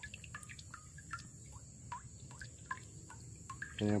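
Pear juice dripping from a wooden cider press into a pot of juice: scattered small plinks, several a second.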